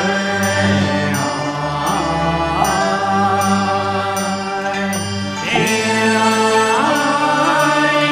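Chinese Taoist ritual music: chant-like gliding vocal lines over held instrumental tones, marked by regular light percussion strokes. The music grows fuller about five and a half seconds in.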